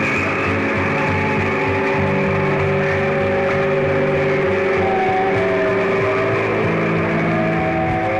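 Live rock band playing a droning passage: a long held guitar tone and other sustained notes over a dense, steady low wash, with no clear beat.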